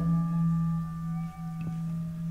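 Live improvised ensemble music: a steady low drone under several sustained, ringing tones that fade slowly, following struck mallet-instrument notes.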